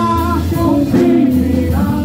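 A woman singing a gospel song into a microphone, holding long notes, over music with a low bass line.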